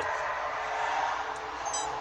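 A short, high-pitched electronic chime near the end, as the Nextbase dash cam powers up when the ignition switches on: the sign that it is wired to an ignition-switched circuit. A steady background hiss underneath.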